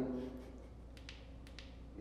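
A quiet room with a few light clicks or taps, two close together about a second in and another shortly after, as a voice trails off at the start.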